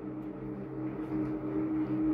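Steady low hum with several pitches over a faint hiss: the recording's background noise between spoken sentences.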